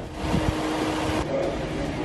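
Outdoor street noise: a steady hiss with a vehicle running, and a single steady hum that starts about a third of a second in and stops about a second later.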